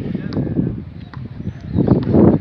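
Wind rumbling on the microphone, with a few faint clicks, growing louder near the end.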